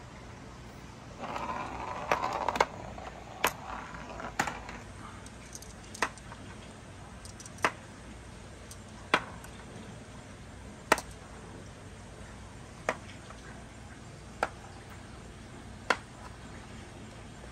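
Glass marbles set down one by one on a painted wooden board, each landing with a sharp click, about one every one and a half to two seconds. A softer rustle runs between about one and four seconds in.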